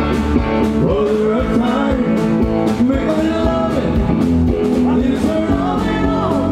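Live sertanejo band music over a concert PA: a male voice singing over guitar and a steady drum beat.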